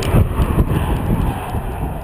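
2013 Ford Taurus SHO Performance Package's turbocharged 3.5-litre engine and tyres fading as the car drives away after passing close by. There is an uneven low rumble that sounds like wind buffeting the microphone.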